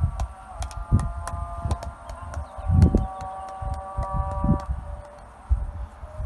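Distant call to prayer sung from a minaret: a man's voice holding long, drawn-out notes. Wind gusts rumble on the phone's microphone.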